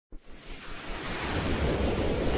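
Whoosh sound effect: a rush of noise that starts abruptly and swells steadily louder, accompanying an animated logo intro.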